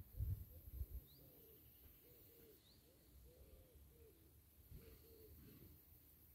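Faint, repeated soft cooing of a dove, with a couple of faint high bird chirps. A few low thumps in the first second.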